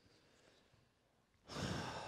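Near silence, then about one and a half seconds in, a man lets out a heavy exhaled sigh.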